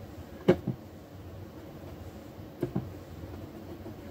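A few light clicks of small objects being handled on a hobby work table. They come in two quick pairs, about half a second in and again about two seconds later, over faint room noise.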